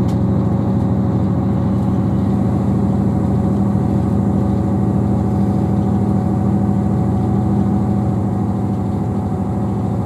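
Inside a British Rail Class 158 diesel multiple unit running at speed: the steady drone of its underfloor diesel engine with the running noise of the train, easing slightly near the end.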